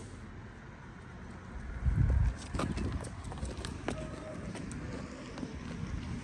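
Hooves of a Holstein-type dairy cow clicking on hard pavement as she is led at a walk, with a dull low thump about two seconds in.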